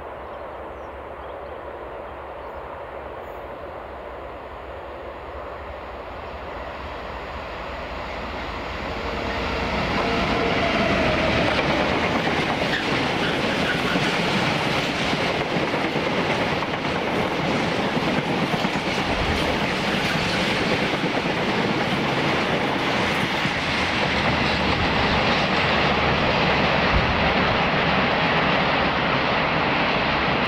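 A Class 66 diesel locomotive hauling a freight train of empty flat wagons approaches and passes. It grows louder until about ten seconds in, then the wagons' wheels rumble and clatter steadily as the train runs by.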